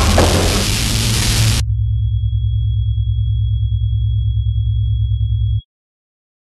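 Trailer sound design: a loud noisy rush over a deep rumble cuts off suddenly about a second and a half in, leaving a low pulsing drone under a thin, high, steady tone, which stops abruptly near the end.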